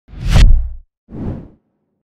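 Whoosh sound effect for an animated logo reveal: a loud swoosh with a deep low end, then a second, quieter swoosh about a second later.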